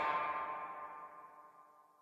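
The final chord of a blues band's song ringing out and fading away, gone about a second and a half in.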